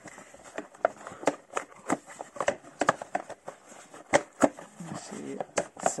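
Cardboard box and plastic packaging of a diecast model truck being handled as the model is worked out of it: irregular clicks, taps and rustles, with a few sharper knocks.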